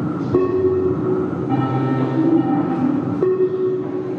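An art installation's soundtrack played over a loudspeaker: several held notes sounding together as a sustained chord that shifts to new pitches a few times.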